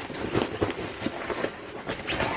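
A fabric bag being rummaged through by hand: rustling cloth with a few small clicks and knocks from the loose items inside.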